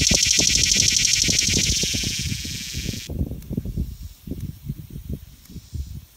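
A cicada singing a loud, high-pitched, rapidly pulsing buzz that eases a little and then stops abruptly about three seconds in.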